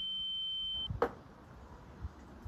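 A steady, high-pitched electronic tone held on one unwavering pitch that cuts off just under a second in, followed at once by a single sharp click.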